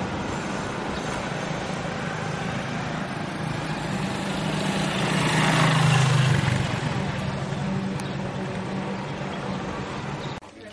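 Motor vehicle engine and road noise, a low hum over a steady rush, swelling to a peak about halfway through and then easing off.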